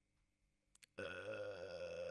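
About a second of silence with two faint clicks, then a man's drawn-out hesitation sound, a held 'euh' at one steady pitch, lasting about a second and a half.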